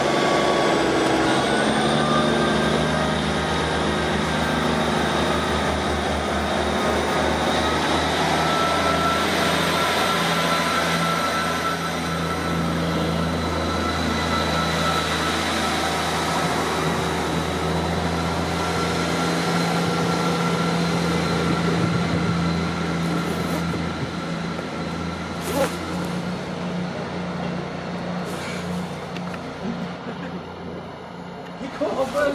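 Diesel multiple-unit passenger train running past and away along the platform: a steady engine drone with a high whine that rises over the first several seconds. The sound eases off over the last few seconds as the train recedes, with a few sharp clicks near the end.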